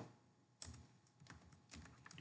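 Faint computer keyboard keystrokes: one sharper key press about half a second in, then a run of lighter, irregular key taps.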